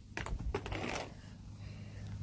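Faint clicks and rustles from a handheld phone being moved about in the first second, then a quiet stretch with a low steady hum underneath.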